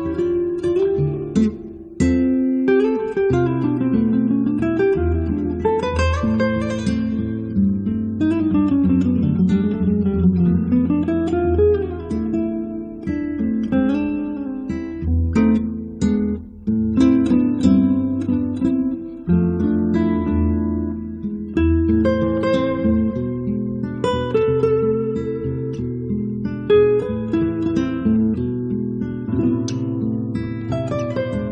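Recorded music of an acoustic guitar trio: several acoustic guitars playing quick picked runs that rise and fall over chords, with no pause.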